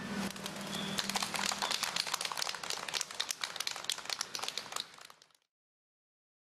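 White doves released by hand and taking off together, their wings clattering in dense, irregular flaps; the sound cuts off suddenly about five seconds in.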